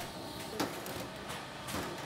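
Shredded plastic waste tipped from a bucket into a machine's metal hopper: a faint, steady rustle with a couple of soft knocks, about half a second in and near the end.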